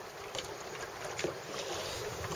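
Steady wind and water noise from open, choppy water beside a small boat, with a few faint clicks.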